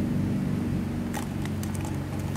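A plastic soft-drink bottle being handled and shaken to tip a large cricket out onto a tile floor, giving a few light clicks and crackles about a second in and again near the end, over a steady low background hum.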